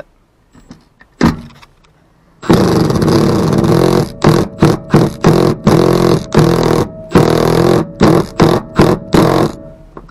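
Cordless impact gun with a 14 mm socket driving the seatbelt buckle's floor bolt in: one continuous run of hammering after a couple of quiet seconds, then a quick series of short trigger bursts as the bolt is snugged down.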